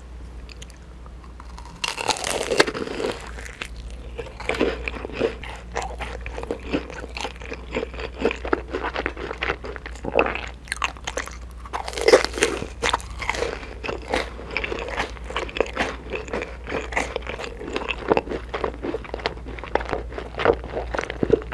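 Close-miked biting into and chewing a fried cheese ball: a loud crisp crunch about two seconds in, then continuous crunching and chewing with a few louder crunches.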